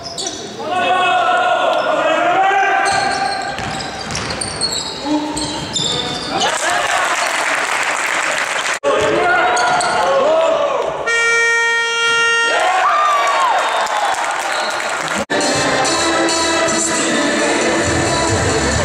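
Indoor basketball game on a hardwood gym floor: sneakers squeaking and the ball bouncing in a reverberant hall. About eleven seconds in, the scoreboard buzzer sounds for about a second and a half, marking the end of the half.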